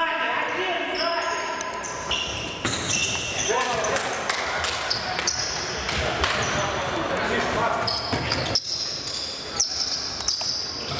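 Futsal game in an echoing sports hall: the ball is kicked and bounces on the hard floor again and again, and players shout and call out now and then.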